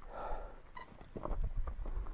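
Footsteps on rocky, gravelly mountain ground: a few irregular knocks and scuffs of boots on stone, over low wind noise on the microphone.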